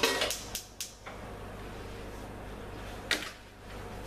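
Long-nosed gas lighter clicking about four times in quick succession as the gas stove burner is lit, then a single sharp click a little after three seconds.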